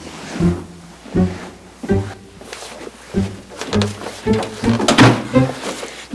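Background music made of a string of short, low staccato notes, a little under two a second.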